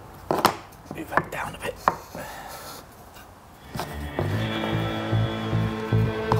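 A handful of sharp wooden knocks and clicks in the first two seconds as cedar boards and a marking knife are handled on the workbench. Background music with a pulsing beat comes in about four seconds in and carries on.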